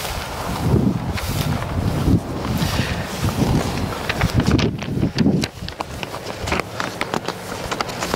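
Wind buffeting the microphone in gusts, with footsteps and the swish of tall dry grass as someone walks through it.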